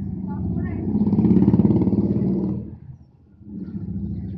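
Wet bicycle disc brake groaning under braking: a loud, low pitched drone that swells to its loudest in the middle, cuts out briefly about three seconds in, then starts again. The noise comes from water poured over the brake disc and pads.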